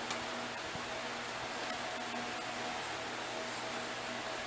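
Steady background hiss with a faint hum, the room tone of a quiet room, with one soft click right at the start.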